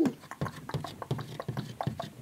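Irregular light clicks and taps of hard plastic toy pieces being handled on a tabletop.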